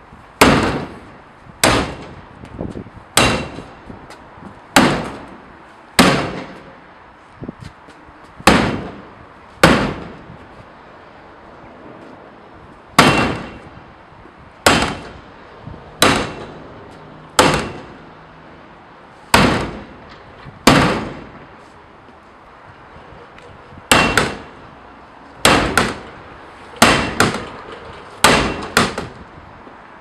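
A bat striking a Nexus City 64G plastic food-waste bin again and again in an impact test of the bin's robustness. There are about twenty hard blows, roughly one every second or two with a couple of short pauses. Each is a sharp bang with a brief ringing tail.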